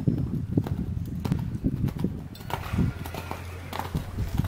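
Hoofbeats of a horse cantering on a sand arena: a run of dull, irregular thuds with a few sharper knocks.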